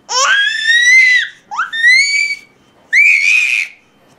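A baby squealing with laughter: three high-pitched rising squeals of about a second each, with short pauses between.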